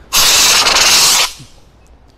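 A short, loud hissing burst of spray from a handheld fire extinguisher discharged through its hose, lasting about a second and cutting off sharply: the partly used extinguisher still has some charge left in it.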